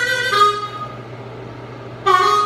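Blues harmonica playing a phrase whose held chord fades out about half a second in, leaving a quieter gap before the next phrase.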